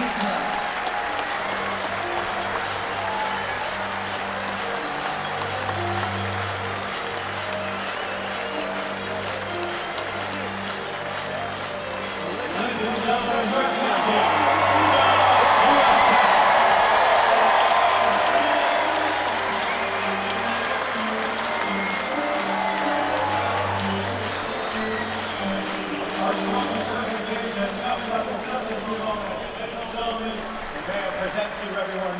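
Background music with held bass notes, under a stadium crowd applauding and cheering. The crowd noise swells to its loudest about halfway through, then eases back.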